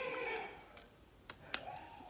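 Quiet sipping of a thick smoothie through a metal straw, with two small mouth clicks about a second and a half in.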